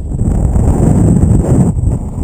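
Wind rushing over a body-mounted GoPro's microphone as the jumper swings on the rope. A loud buffeting rush that swells, dips briefly near the end and picks up again.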